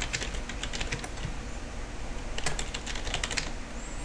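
Typing on a computer keyboard in two runs of quick keystrokes, the first in the opening second and the second a little past the middle, with only scattered taps between them: an account name and then a password being keyed in.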